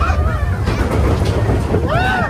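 Riders whooping and yelling on the Big Thunder Mountain Railroad mine-train roller coaster, once at the start and again near the end, over a steady low rumble of the moving train and wind.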